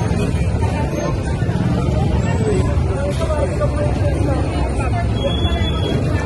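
Crowd babble in a busy street over a steady low engine rumble from motorcycle traffic moving through the crowd.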